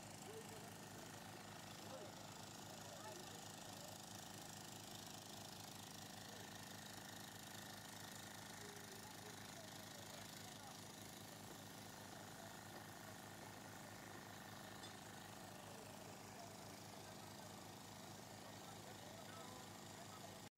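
Near silence: a faint, steady background with distant voices of people talking.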